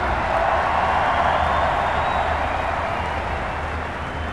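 Basketball arena crowd noise: many voices cheering together, slowly dying down.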